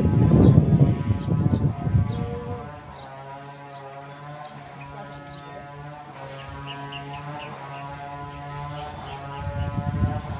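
A loud, choppy low rumble for the first couple of seconds, then a steady droning hum at one pitch, with birds chirping.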